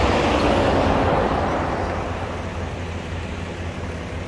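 A vehicle passing on the highway, its road noise swelling in the first second and slowly fading away, over a steady low rumble.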